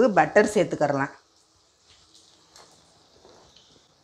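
Butter melting in a hot nonstick kadai: a faint sizzle with a few small crackles, starting a little after the first second.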